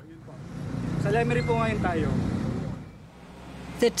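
A road vehicle passing, its sound swelling and fading over about three seconds over a steady low rumble, with faint voices behind it.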